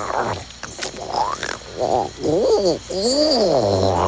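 A baby dinosaur creature voicing a run of warbling calls that swoop up and down in pitch, from about halfway through, with a few short clicks before them.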